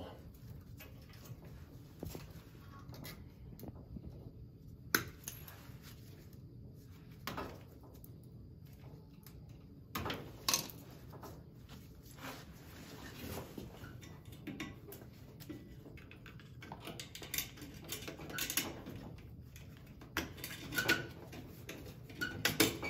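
Faint, sporadic small metallic clicks and rattles of pliers working on wire ends as the wiring for a switching relay is cleaned up. There are single sharp clicks about 5 and 10 seconds in, and a busier run of clicks near the end.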